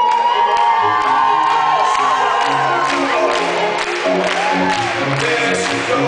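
A live pop band playing through a hall's sound system, with the audience cheering and whooping over the music.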